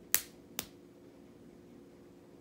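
Two sharp taps or clicks of a hand on a light-up drawing board, about half a second apart, the first one louder.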